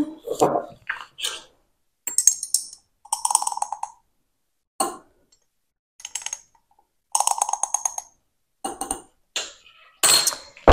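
A spice jar and measuring spoon being handled while ground cinnamon is measured out: several short bursts of quick rattling and light clinks, with quiet gaps between.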